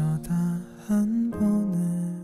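A male ballad vocalist sings a slow melodic phrase in a soft voice of held notes, over gentle instrumental accompaniment.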